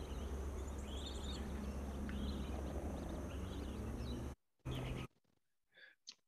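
Field-recorded sound track of a wildlife clip: steady low background noise with faint, scattered bird calls. It cuts off suddenly about four seconds in, returns in one short burst, then drops to near silence.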